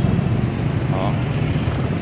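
Steady low rumble of street traffic, with one short spoken word about a second in.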